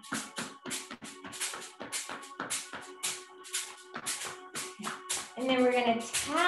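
Rapid tapping with the hands down the lower back towards the tailbone, a quick uneven run of short, rustling strokes at about four a second. Faint steady background music runs underneath.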